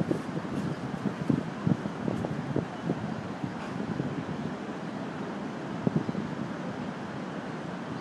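Wind buffeting the microphone in irregular gusts over a steady low outdoor rumble.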